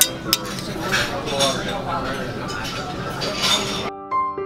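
Metal sauce ladle clinking twice against a stainless-steel sauce boat as peppercorn sauce is served, over a murmur of voices and tableware clatter.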